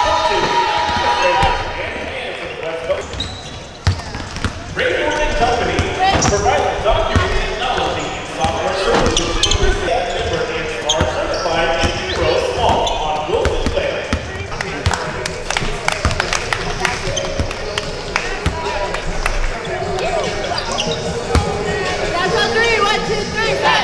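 Basketballs bouncing on a gym floor, many separate thuds throughout, mixed with indistinct players' voices and calls.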